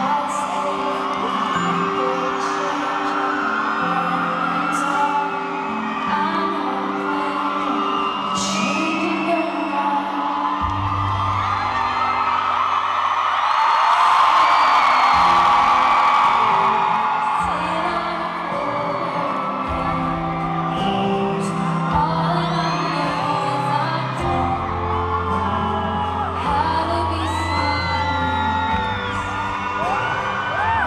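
Live concert performance of a slow ballad: a woman singing to her own acoustic guitar over sustained low backing notes, heard through the crowd. Audience whoops and screams rise over the music, swelling loudest about halfway through.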